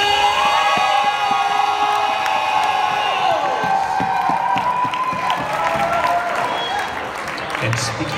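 Crowd in a large hall cheering, with long held whoops from several voices that waver and cross one another, over scattered clapping.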